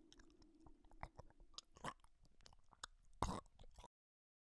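Wet crunching and squelching sound effect, made of irregular cracks and clicks, with the loudest crunch about three seconds in. It cuts off abruptly just before the end.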